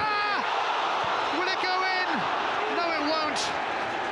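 Football stadium crowd noise reacting to a near miss at goal, with a few voices shouting out over it.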